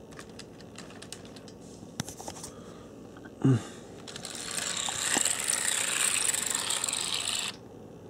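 Light metallic clicks and ticks from a brass HO-scale 4-8-4 model steam locomotive being handled on the track, then a short grunt. About a second later comes a loud rushing noise lasting about three seconds that cuts off suddenly.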